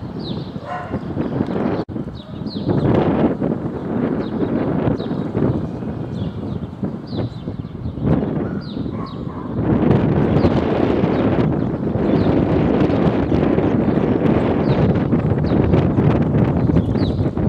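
Wind buffeting the microphone, a gusty rumbling noise that grows heavier about two-thirds of the way through. Short, high falling chirps sound about once a second over it.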